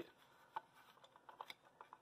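Near silence with a few faint, light clicks: a Federal Signal Vibratone 450 fire alarm horn being turned over in the hand, not sounding.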